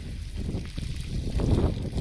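Water spraying from a garden hose nozzle over a child's hands and splashing onto the dirt, with wind noise on the microphone.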